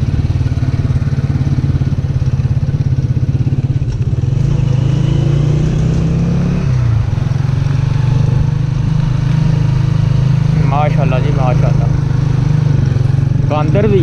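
Honda 125 motorcycle's single-cylinder four-stroke engine running steadily under way. Its pitch dips briefly about seven seconds in, then picks up again.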